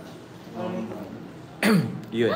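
A man gives a brief low voiced throat sound about half a second in, then one loud, sharp cough near the end.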